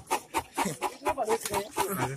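Pig grunting repeatedly in quick, short strokes.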